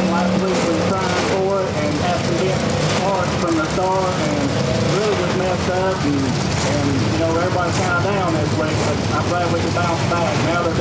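Talking continues over a steady low rumble of race car engines running in the background.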